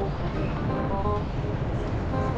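Steady low rumble of an amusement ride in motion, heard from a car as it spins, with faint background music.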